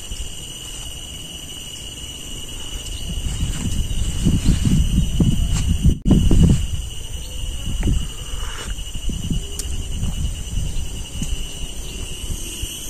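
A steady, high-pitched drone of insects in the surrounding trees, with a low rumble of wind on the microphone that swells from about three to seven seconds in.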